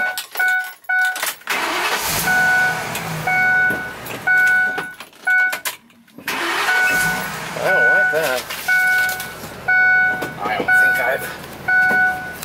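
Ford E-450's dashboard warning chime beeping over and over with the key left in the ignition, a sign that the key is stuck and will not come out. Rattling, noisy handling sounds with a low rumble under the chime come in about a second and a half in, break off briefly around the middle, then start again.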